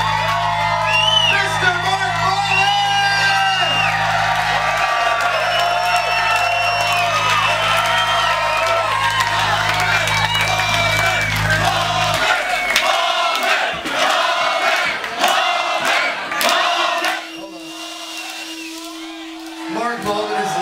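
Large outdoor concert crowd cheering, whooping and yelling at the end of a live rock song, over a held low note from the band that cuts off about twelve seconds in. After that the cheering and clapping go on, dropping quieter near the end.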